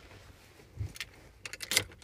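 Handling noise as a camera is set down: a soft bump a little under a second in, then a few sharp clicks near the end.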